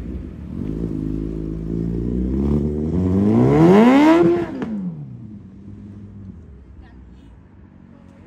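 Sport motorcycle engine pulling away under acceleration: a steady note, then a climbing pitch that peaks about four seconds in. The pitch then drops and the sound fades as the bike rides off into the distance.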